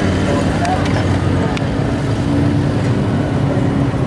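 An engine running steadily in a race pit area, a continuous low drone, with people's voices over it.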